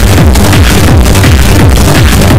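Loud, heavily compressed hardcore techno with a fast, pounding kick drum whose bass strokes drop in pitch with each hit.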